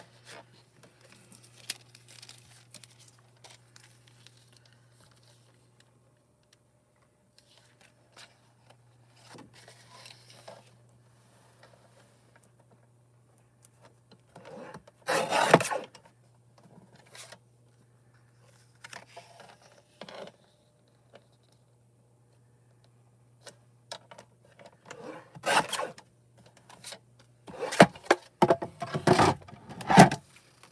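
Cardstock being handled and cut on a sliding-blade paper trimmer: scattered paper rustling and scraping, with the loudest scraping stroke about halfway through and more handling near the end.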